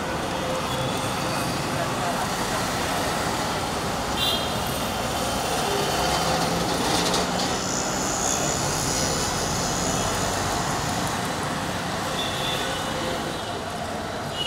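Steady street traffic noise with the murmur of people talking in the background.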